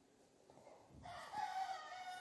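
Near silence, then about halfway through a faint, drawn-out animal call with a clear pitch that rises slightly and is held to the end.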